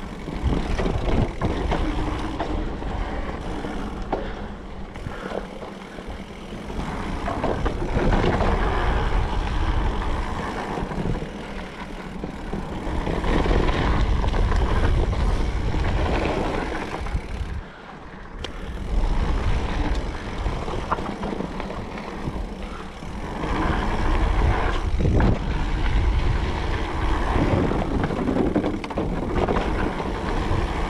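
Wind rushing over the action camera's microphone as a Specialized Levo electric mountain bike rolls fast down a dirt trail, with tyre noise on the dirt and scattered clicks and rattles from the bike. The rush swells and fades with speed, with a brief lull partway through.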